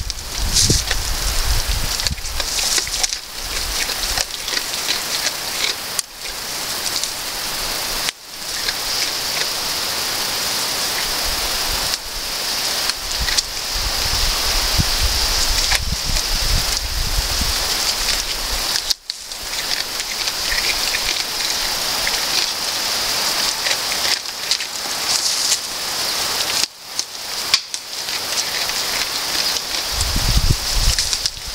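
A goat cropping grass close to the microphone: continuous crackling and rustling of dry grass being torn and chewed, over a steady high hiss.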